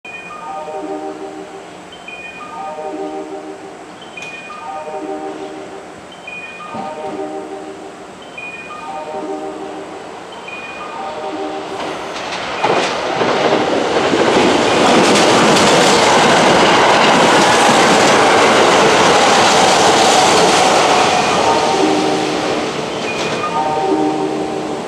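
An electronic warning chime repeats about every second and a half to two seconds while a Kintetsu limited express (22600 series Ace with a 30000 series Vista EX) approaches. From about halfway the train runs through the station at speed, a loud rush of wheels and running gear that peaks and then fades, and the chime is heard again near the end.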